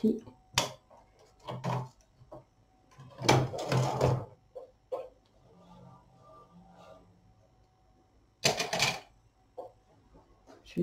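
Handling noises on a knitting machine's needle bed as yarn and needles are worked by hand: a sharp click early on, then short scraping bursts, the longest about three seconds in and another near the end, with a soft murmured voice in between.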